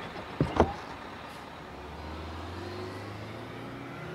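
City bus sound effect: two short sharp sounds about half a second in, then a steady low engine hum building as the bus pulls away from the stop.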